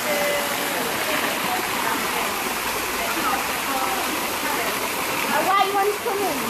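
Steady rush of running water in a rocky koi pond, with faint voices over it.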